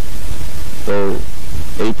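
Loud, steady background noise, heaviest in the low end, in a pause in a man's speech into a microphone; one short spoken syllable comes about a second in and talk resumes near the end.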